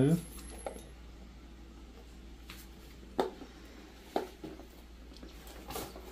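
A few light clicks and taps from handling a black synthetic-leather motorcycle tool bag and its strap, spaced a second or so apart over a low steady hum.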